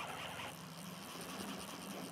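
Faint, steady rush of flowing river water, with a low steady hum underneath.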